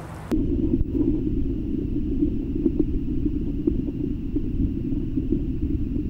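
Muffled, steady low rumble of river current heard by a camera submerged underwater, with a few faint ticks. It starts abruptly about a third of a second in, as the microphone goes under.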